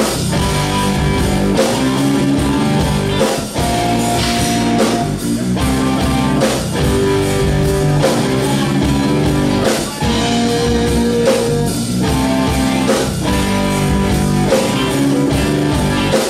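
A live rock band playing an instrumental passage: electric guitars strumming over a drum kit, loud and steady.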